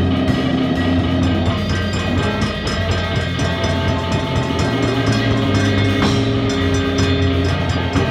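Live band playing a slow, droning passage: a steady deep bass with long held notes that shift pitch every few seconds, over an even, high ticking from the drum kit's cymbals.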